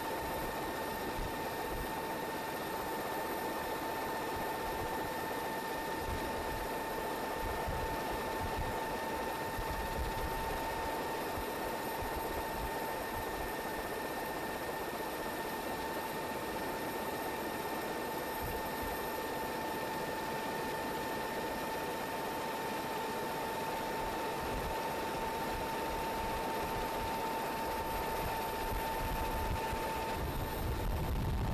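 Steady aircraft engine and airflow noise heard from aboard, with a constant high whine running through it.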